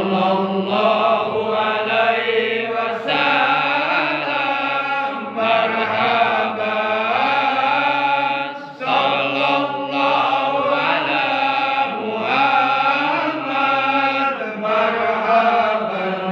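Men chanting an Arabic devotional hymn (shalawat) in marhaban style, led into a microphone over the mosque's sound system. Long melodic sung lines with one short break about nine seconds in.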